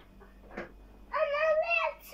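A young child's high-pitched drawn-out vocal sound, wavering in pitch, lasting about a second in the second half, preceded by a faint tap.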